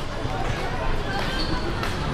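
Outdoor park background noise: a steady low rumble with faint distant voices.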